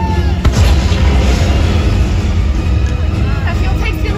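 Loud show soundtrack music over a heavy low rumble, with a sharp pyrotechnic explosion boom about half a second in.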